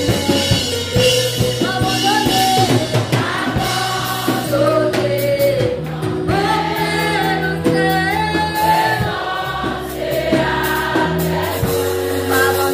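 A congregation singing a gospel worship song together, backed by a live band of electric bass and drum kit.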